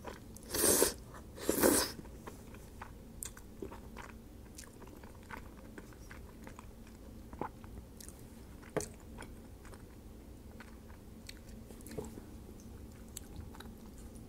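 A person eating creamy pasta: two loud slurps of noodles around the first couple of seconds, then soft chewing with scattered faint clicks.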